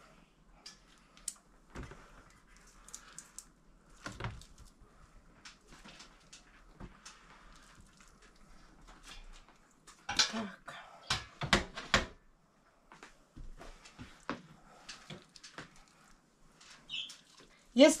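Metal kitchen tongs clicking and tapping against a stainless steel pot and a baking tray as roasted peppers are picked up and dropped into the pot. Scattered light clicks, with a louder run of sharp taps about ten to twelve seconds in.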